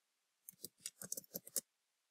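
Computer keyboard typing: a quick, faint run of about ten key clicks, starting about half a second in.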